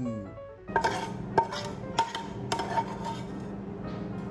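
A metal spatula scraping and knocking against a frying pan as fried pâté is pushed out onto a plate of rice: several sharp clicks and scrapes starting about a second in. A steady background of music runs underneath.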